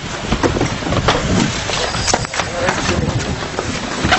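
Indistinct voices mixed with repeated knocks and rustling handling noise from a camera carried on the move.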